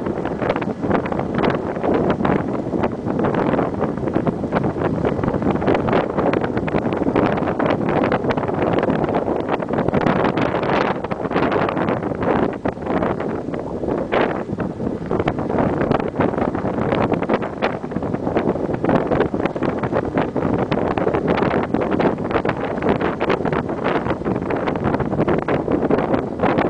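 Steady wind noise rushing over the microphone of a camera carried on a moving bicycle.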